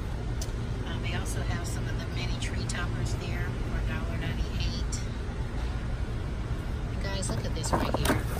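Store ambience: a steady low rumble with indistinct voices of other people in the background.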